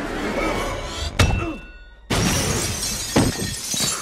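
Fight sound effects over film score. A heavy impact comes about a second in, then a brief lull, then a sudden loud crash of shattering glass that goes on with falling shards and another hit.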